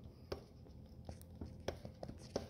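A few faint, scattered clicks as the rear drive shaft of a 2022 Can-Am Outlander 850 is worked in and out by hand at the transmission: the shaft has play there because its bolt has worked loose.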